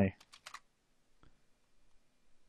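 Computer keyboard keys tapped to type in a number: a quick run of light clicks just after the start, then a single click a little over a second in.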